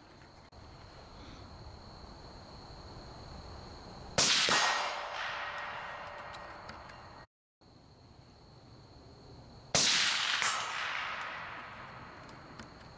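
Two rifle shots about five and a half seconds apart, each with a long echo that dies away over a few seconds; a brief ringing tone follows the first.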